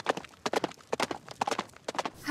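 A quick run of sharp clicking taps, about seven a second, falling in uneven pairs.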